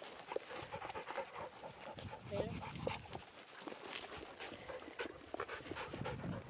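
Several dogs panting hard close by, worn out from running the trail.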